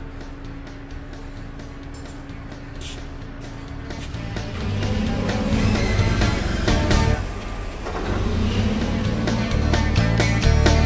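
Background music, with a Toyota forklift's engine running underneath, louder from about four seconds in, as the mast tilts the raised pallet back.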